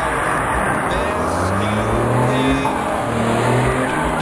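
Volkswagen Constellation flatbed truck's diesel engine revving as it pulls away, its pitch rising, dropping about three seconds in, then rising again. A rock song with a steady drum beat plays over it.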